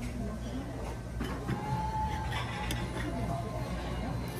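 Restaurant dining-room hubbub: indistinct chatter of other diners, with a few light clinks of dishes and cutlery.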